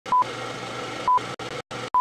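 Film-leader countdown sound effect: a short, high, pure beep about once a second, three in all, over a steady noisy hum that drops out abruptly a few times.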